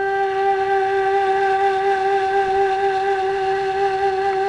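Background music: a wind instrument holding one long, steady note.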